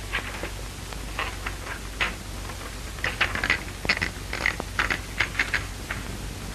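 Manual typewriter keys being struck in irregular runs of sharp clicks, sparse at first and busier in the second half, over the steady low hum and hiss of an early film soundtrack.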